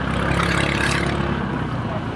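Steady engine and road noise of a two-wheeler heard from its seat while riding slowly, an even rush with no breaks.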